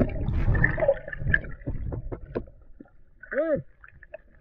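Underwater sound picked up by a submerged action camera's microphone: a muffled low rumble of moving water with knocks during the first second, then scattered clicks and gurgles. About three and a half seconds in comes a short muffled voice-like call that rises then falls in pitch.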